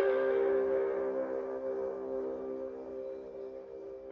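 Intro music: a sustained guitar chord ringing and slowly fading away.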